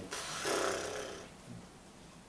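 A person's long, breathy exhale, like a sigh, fading out over about a second, followed by faint room tone.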